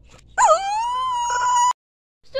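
A high-pitched, puppy-like whimpering cry: one drawn-out note that dips, then holds steady for about a second before cutting off abruptly.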